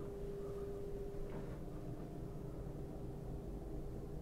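Quiet, steady machinery hum in a yacht's cabin: a low rumble with a faint steady higher tone running through it, without change.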